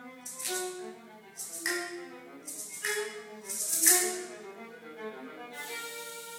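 Solo viola and percussion ensemble playing: held bowed viola notes over pitched percussion, cut by four bright, hissy percussion strokes about a second apart, the loudest near the middle. A steady high shimmer takes over near the end.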